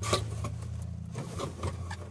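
Rustling and scraping of a cardboard box and its packing as an artificial twig tree is lifted out, with a few light knocks, over a steady low hum.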